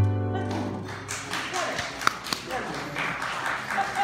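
The final held keyboard chord with a deep bass note breaks off at the start and dies away within about a second. Then an audience claps, with voices mixed in and one sharp click about two seconds in.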